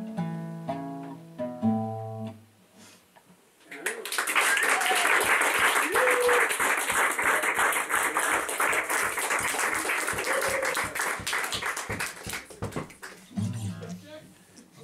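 Nylon-string acoustic guitar: a few picked notes, a brief pause, then a loud, harsh wash of fast rhythmic strumming at about five strokes a second that thins out near the end.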